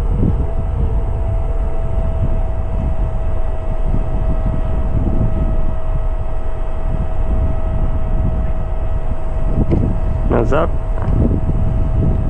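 Wind buffeting the microphone in a heavy, steady low rumble, with a faint steady high whine under it. A brief murmur of voice comes near the end.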